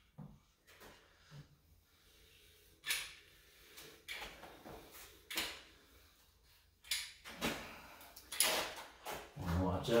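Hand caulking gun dispensing construction adhesive: a run of short clicks and clacks from the trigger and plunger rod as the gun is squeezed and moved along the panel, several strokes a few seconds apart.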